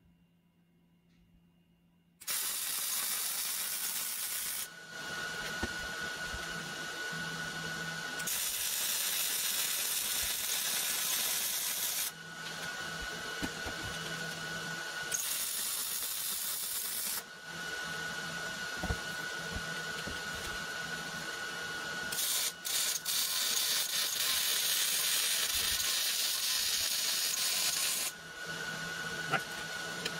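Wire-feed welder's arc hissing as weld beads are run on a box-steel mount. It starts about two seconds in and goes on in several runs of a few seconds each, with brief breaks between them.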